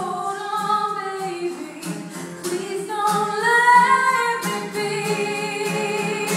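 A woman singing an indie-folk song in long, held notes over a strummed 1968 Martin D-18 acoustic guitar. Her voice climbs to its highest, loudest notes about halfway through.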